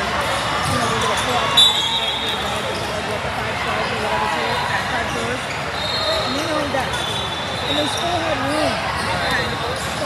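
Basketball bouncing on a hardwood court in a large hall, over a steady chatter of voices. A few short high-pitched squeaks come and go, the loudest about one and a half seconds in.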